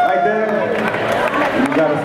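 Several voices talking and calling out at once over a steady murmur from the audience, with no music playing.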